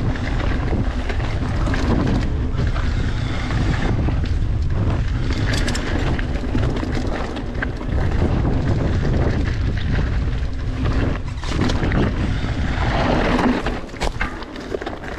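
Wind buffeting the camera microphone during a fast mountain bike descent of a flow trail, a steady low rumble with scattered clicks and rattles from the riding.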